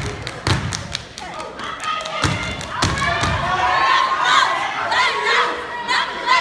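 A step team stomping in boots and clapping on a wooden stage: a quick series of sharp thuds and claps. Shouted voices join in over the second half.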